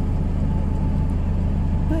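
City bus engine running, heard from inside the passenger cabin: a loud, steady low drone with a fast even pulse.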